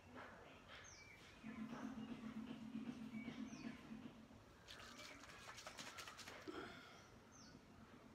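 Faint small-bird chirps: short, high calls that drop in pitch, repeated every second or so. A low steady hum comes in for a few seconds, and a run of soft clicks follows about five seconds in.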